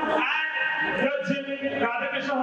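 A person's voice, sounding continuously with held and gliding pitches.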